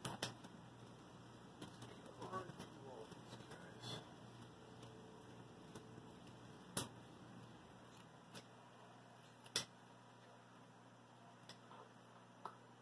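Wire cutters snipping through the bundled output wires of a PC ATX power supply: several sharp snips a few seconds apart, over a faint low hum.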